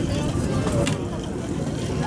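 Outdoor background noise: a steady low rumble with faint voices of people nearby, and a single light click just before a second in.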